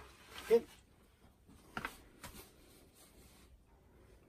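A few faint, light clicks and rustles of small parts being handled by hand, mostly around two seconds in, in an otherwise quiet small room.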